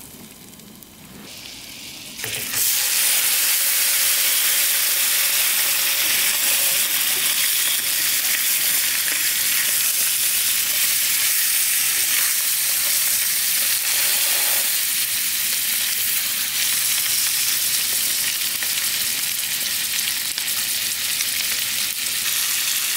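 Brown trout fillet laid skin-down into hot butter in a small frying pan on a propane camp stove. A loud, steady sizzle starts suddenly about two and a half seconds in and keeps going, with a much fainter butter sizzle before it.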